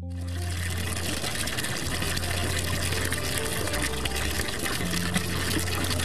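Water gushing steadily from the metal outlet pipe of an emergency water treatment unit, with a low steady hum underneath.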